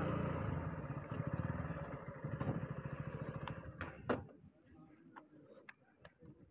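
KTM Duke 125's single-cylinder engine running at low revs as the bike rolls to a stop, then switched off about four seconds in. A few light clicks follow.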